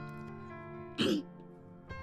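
Soft background music holding one sustained chord, with a man clearing his throat once, briefly, about a second in.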